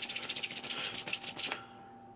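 Palms rubbed together quickly and repeatedly, skin on skin, stopping about a second and a half in.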